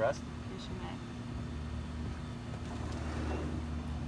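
A low, steady motor hum comes in about a second and a half in and carries on.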